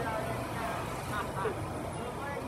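Busy city-street ambience: steady road traffic noise from passing vehicles, with fragments of people talking nearby.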